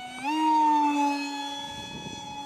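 Whine of an RC park jet's DYS BE2208 2600 Kv brushless motor spinning a Master Airscrew 6x4x3 three-blade prop, a steady pitched hum with overtones that sounds almost like an EDF. A fraction of a second in, the pitch steps up and the sound grows louder, then the pitch drifts slowly down as it fades a little.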